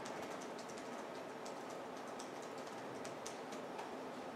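Computer keys tapped in short, irregular clicks, faint over a steady room hiss.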